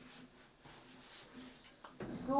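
Near silence: room tone with faint rustles and a small click near the end.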